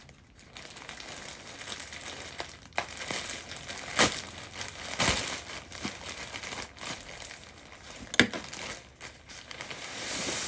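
Plastic mail bag crinkling and rustling as it is cut open with scissors and the package inside is pulled out, with a few sharp crackles of the plastic, the loudest about four, five and eight seconds in.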